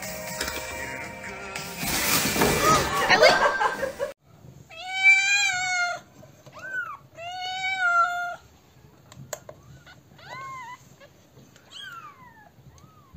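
A loud crinkling, rustling noise for about four seconds, then a kitten meowing: two long, high-pitched meows that fall off at the end, and a shorter one a little later.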